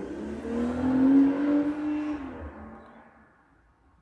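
A motor vehicle passing by: its engine note swells to a peak about a second in, bends slightly in pitch, and fades away over the next two seconds.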